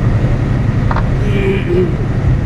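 Steady low drone of a semi-truck's diesel engine and tyres on wet highway, heard inside the cab at cruising speed. There is a short click about a second in and a brief hummed, voice-like sound near the end.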